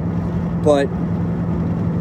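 Steady road noise inside a moving car's cabin, with a constant low drone underneath.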